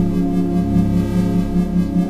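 A synthesized ambient drone of steady layered tones, with a low tone pulsing on and off about four times a second. This is an isochronic tone track combined with binaural beats, meant for brainwave entrainment.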